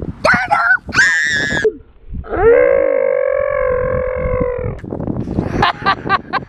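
A young girl's voice: a short high-pitched squeal, then one long held note for about two and a half seconds, sliding up at the start, then quick choppy syllables near the end.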